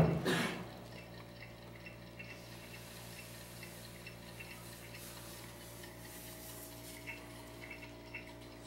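Quiet room tone with a steady low electrical hum and a few faint scattered ticks. A voice trails off at the very start.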